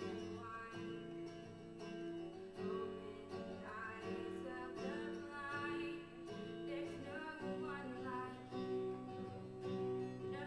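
A girl singing a gospel song solo while strumming chords on an acoustic guitar, her voice coming in phrases over the steady guitar accompaniment.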